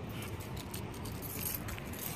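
Low rumble of wind and handling on a hand-held phone microphone while walking, with brief bursts of light metallic jingling.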